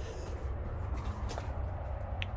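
Handling noise from a handheld camera being moved: a steady low rumble with a few faint clicks in the first second and a half.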